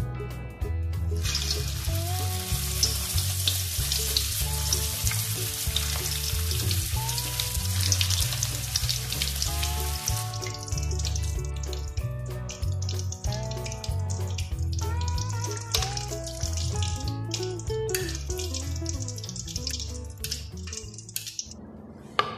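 Spring rolls deep-frying in a pan of hot oil, a steady sizzle over background guitar music. The sizzle starts about a second in and is brightest in the first half, then goes on softer with scattered ticks.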